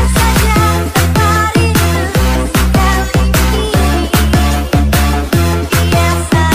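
Jungle dutch electronic dance music in a DJ mix: loud, with heavy bass notes that drop in pitch on a steady beat under a high synth lead melody.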